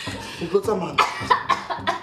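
Voices in a tense exchange between a man and a woman, broken by coughing.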